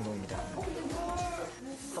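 Quiet male voices talking in Korean, played back from a variety-show clip.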